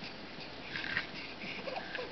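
A young baby's soft breathy grunts and small squeaks, the loudest just before a second in.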